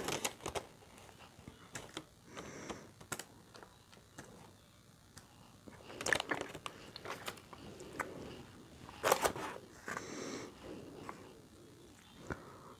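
Faint eating sounds: soft chewing and mouth noises, with the paper wrapper crinkling as fingers pick through the filling of an opened burrito. They come as scattered clicks and rustles, with two louder clusters about six and nine seconds in.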